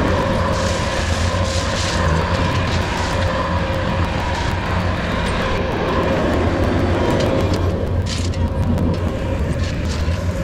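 Bobcat compact track loader's diesel engine running close by at a steady speed, a low hum with a steady whine above it and a few brief gravelly scrapes.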